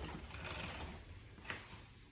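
Louvered bifold door being pushed open: a quiet rustle of the panels with a single click about one and a half seconds in.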